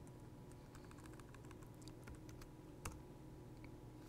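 Faint keystrokes on a computer keyboard: a run of light key taps, then one louder key click about three seconds in.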